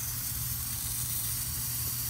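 Steady hiss of gas escaping from a leak at a solder joint on an air conditioner's filter drier: the refrigerant circuit is leaking there.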